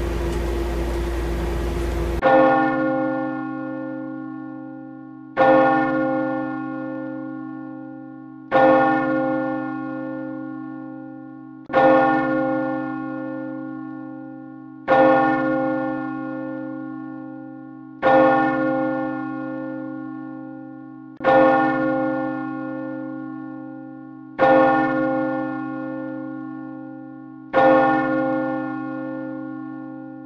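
A single large bell tolling slowly nine times, one stroke about every three seconds, each ringing out and fading before the next. Before the first stroke there is a couple of seconds of steady room hum.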